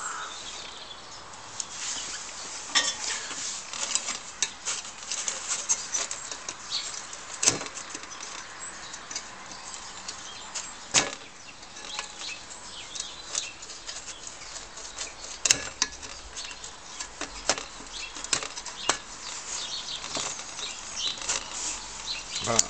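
Irregular small metallic clicks, scrapes and clinks from a screwdriver and pliers working on the brass burner parts of an old Optimus 415 paraffin blowtorch, with a few sharper knocks now and then.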